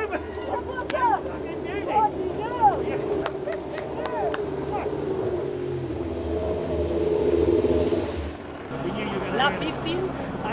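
Excited whoops and shouts of celebration, short rising-and-falling cries, in the first few seconds. Then a vehicle engine runs, swelling and cutting off sharply a little after eight seconds in.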